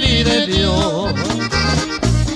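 Norteño band music: the accordion plays a melodic run over a steady, alternating bass beat in an instrumental break of a corrido.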